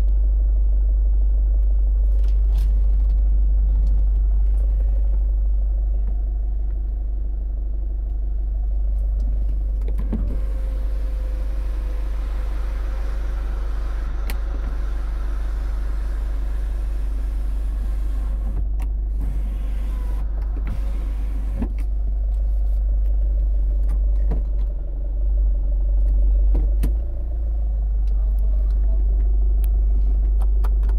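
A 2005 Kia Sportage's engine idling, heard inside the cabin as a steady low rumble, with scattered clicks from switches and handling. About a third of the way in, the electric sunroof motor whirrs for several seconds as the sunroof opens.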